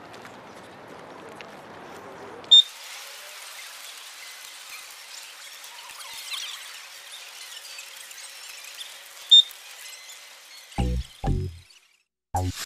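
Two single short, loud electronic beeps from a carp bite alarm, about seven seconds apart, over a steady hiss. Near the end a thudding music beat comes in.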